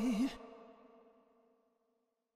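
The end of a song: a held sung note with wide vibrato stops about a third of a second in, and its echo fades out within the next second.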